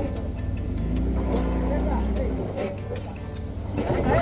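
A Jeep Wrangler's engine running at low revs under load as the Jeep crawls up a boulder ledge, with people's voices in the background.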